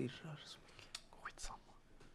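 Faint, soft-spoken dialogue, close to a whisper.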